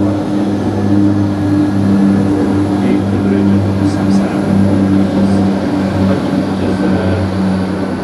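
A loud, steady low mechanical drone on a few fixed pitches, like an engine running, swelling slightly after the start and easing toward the end.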